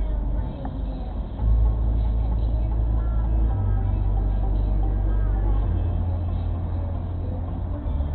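Music playing on a car stereo inside a stationary car's cabin, its deep bass line moving to a new note about every two seconds.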